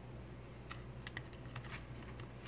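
A few faint, light clicks from handling the USB cable and plastic enclosure, over a low steady hum.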